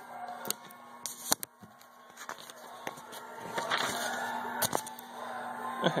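Close handling noise: scattered sharp clicks and a stretch of rustling, over a steady low hum.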